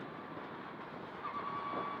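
Mitsubishi Lancer Evo X rally car at speed, heard from inside the cabin: steady engine and road noise, with a thin high whine coming in a little past halfway.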